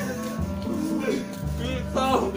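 Background music with a steady low bass line, with voices over it in the second half.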